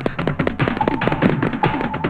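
Action-film background score driven by rapid, regular percussion strikes, with a short repeating higher tone cycling about every second.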